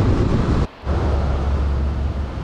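Car road noise heard from the moving car, a broad rumble and hiss of tyres and engine. It cuts off abruptly less than a second in, and after a brief gap a steadier low rumble with hiss follows.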